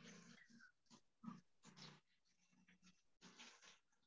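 Near silence: faint room tone from an open microphone, with a couple of brief faint sounds about a second and a half in.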